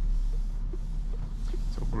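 Steady low rumble of road and tyre noise inside the cabin of a 2024 Opel Corsa driving on a wet road, with a few faint light ticks over it.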